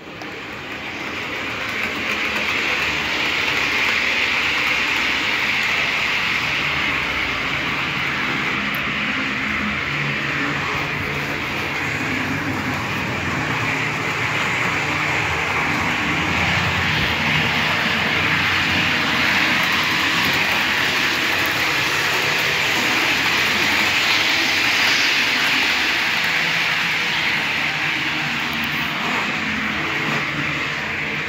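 Steady train running noise that rises quickly to full level in the first couple of seconds and then holds steady.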